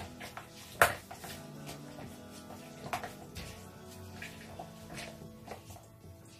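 Quiet background music, with a few sharp clicks and knocks from a red plastic citrus reamer juicer and grapefruit halves being handled on a wooden chopping board. The loudest click comes just under a second in, and another about three seconds in.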